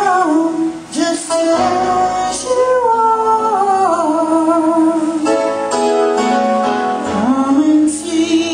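A woman singing a slow gospel song into a handheld microphone over instrumental accompaniment, her voice gliding between long held notes.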